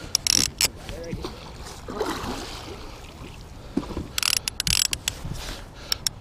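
A musky being played at the side of a boat: bursts of clicking from a baitcasting reel's drag, one of them a little past the middle, and water splashing as the fish thrashes at the surface. Brief low voices come in between.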